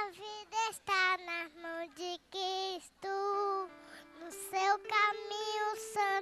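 A small girl singing a Portuguese hymn solo into a microphone, in a high voice with short held phrases.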